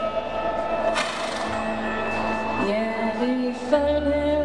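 Live band playing a slow country ballad, mostly instrumental here: sustained chords with a crash about a second in that rings on. The low bass notes are absent for most of the passage and come back in shortly before the end.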